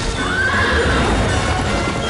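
A horse neighing: one call that rises and then holds, over music.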